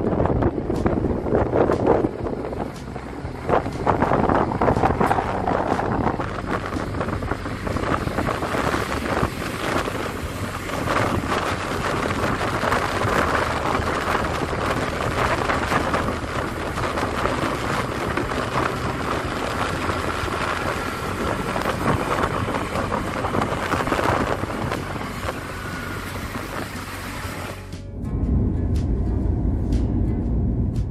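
Wind rushing over the microphone with engine and road noise from a moving motorbike. About two seconds before the end it cuts to a steady low rumble of road noise inside a moving car.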